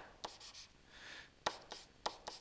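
Faint scratching of a stylus drawing on a tablet, with a few light taps.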